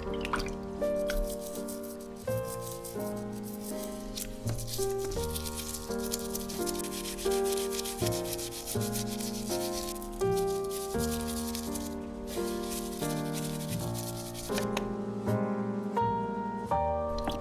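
A toothbrush scrubbing a wet, soapy plastic doll, a scratchy brushing that stops about a second and a half before the end, over background music.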